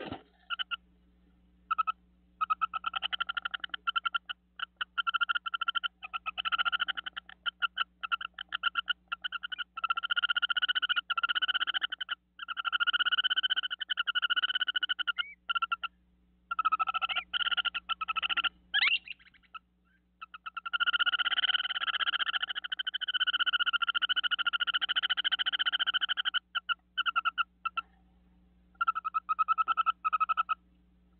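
Animal calls: very fast pulsed trills in repeated bouts of one to several seconds, with short gaps between them. A brief call sweeping upward in pitch comes about two-thirds of the way through.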